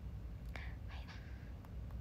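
A woman's faint breathy whisper close to a phone's microphone, with a sharp click about half a second in and a couple of faint ticks near the end from fingers handling the phone.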